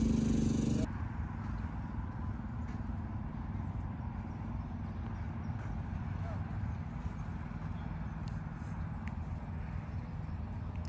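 A steady low motor hum that cuts off abruptly about a second in, followed by steady outdoor background noise with a low rumble and a few faint clicks.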